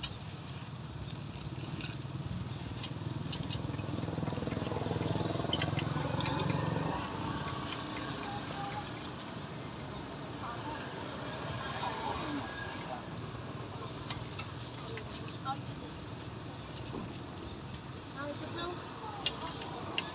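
Street-stall ambience: people talking in the background, a low rumble during the first several seconds that fades out, and scattered light clicks.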